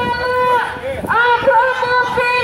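A woman's voice chanting a slogan through a megaphone in long, steady held notes. One note breaks off about half a second in and the next starts about a second in.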